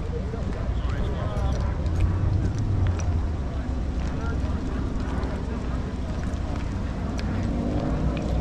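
Outdoor ambience of a crowd: wind rumbling on the microphone, with faint chatter of people around and a few light clicks.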